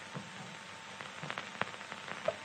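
Faint steady hiss with a few small crackles and clicks: the surface noise of an old film soundtrack during a pause in the narration.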